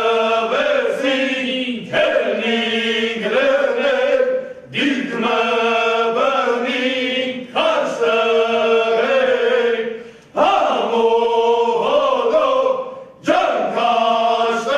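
A group of men singing together, in phrases of two to three seconds, each followed by a brief break.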